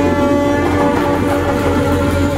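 Live band music: saxophones, guitars, bass and drums holding loud, steady notes.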